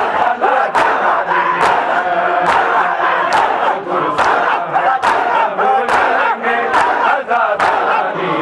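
A large crowd of men chanting a noha together while beating their chests in unison in Shia matam. The hand-on-chest strikes land in a steady rhythm, a little more than once a second, over the loud massed voices.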